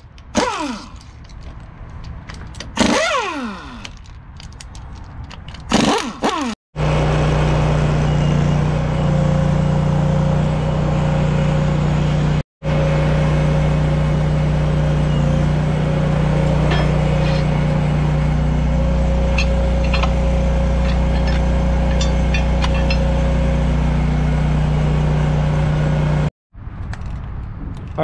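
A handheld impact wrench spins and rattles bolts out of a planetary hub housing a few times at the start. Then a truck engine runs steadily at idle with a steady whine, most likely the crane truck's engine driving its hydraulics while the crane chain is hooked to the hub, and a few light metal clinks come near the middle.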